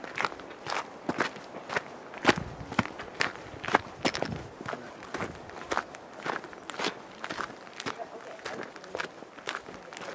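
Footsteps crunching on a dirt and gravel forest trail at a steady walking pace, about two steps a second.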